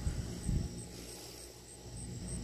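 Quiet pause with a low background rumble and a brief handling knock about half a second in, as the portable tire inflator is held on the valve stem. A faint high chirp repeats about three times a second.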